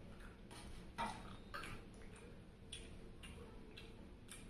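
Crisp fried papad rolls crackling as they are handled and eaten with the fingers: a series of short, sharp crackles, about seven in four seconds, the loudest about a second in.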